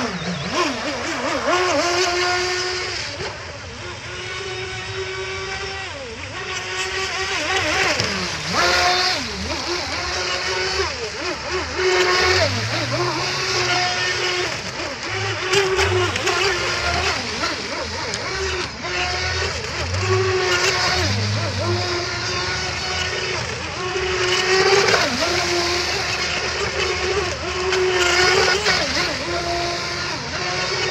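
Vector SR80 Pro RC speedboat running at speed. Its brushless electric motor whines continuously, the pitch rising and falling with the throttle, over the hiss of the hull and spray on the water.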